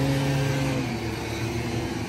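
A motor vehicle engine running as it passes in street traffic: a steady hum that dips slightly in pitch and fades a little toward the end.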